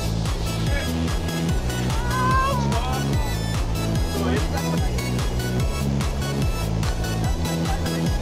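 Electronic dance music with a steady, repeating bass beat.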